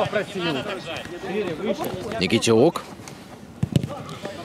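Men's voices calling out during a football match, followed near the end by two short sharp thuds of a football being kicked.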